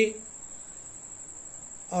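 A cricket's steady high-pitched trill, unbroken through a pause in a man's speech; his voice comes back at the very end.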